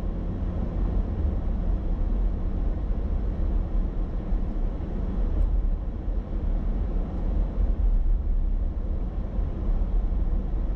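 Steady low road and engine rumble of a car driving through city traffic, heard from a dashboard camera inside the car.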